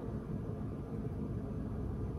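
Steady low rumble of indoor background noise with a faint hiss above it, in a pause between words.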